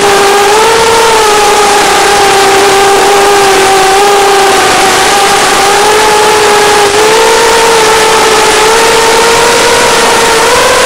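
Racing drone's brushless motors and propellers whining at a steady pitch that wavers with throttle and steps up slightly about seven seconds in, over a loud even hiss.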